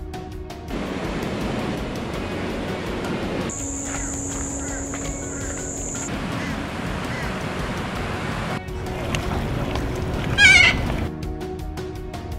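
Outdoor ambience: a steady rushing noise, with a thin high steady whine for a few seconds in the middle and a short, loud warbling animal call near the end. Background music plays briefly at the start and comes back just before the end.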